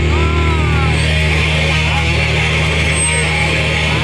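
Punk rock band playing live, heard from within the crowd: distorted electric guitar and bass hold a chord that drones steadily. Voices shout briefly over it in the first second.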